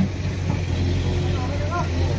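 A large engine running steadily with a low, even hum, with faint voices in the background near the end.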